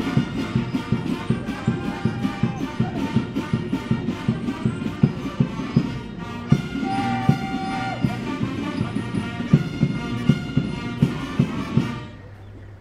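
Military brass band playing a march: held brass notes over a steady, regular drum beat.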